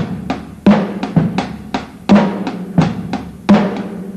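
A drum kit playing a simple beat of bass drum and snare, with the strongest hits coming about every 0.7 s, lighter strokes between them and a low ring after each hit.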